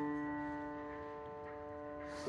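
Grand piano chord held and ringing, its notes slowly fading away.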